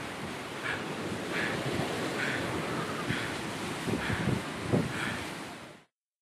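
Steady rushing noise of wind and water, with faint swishes repeating about once a second, fading out just before the end.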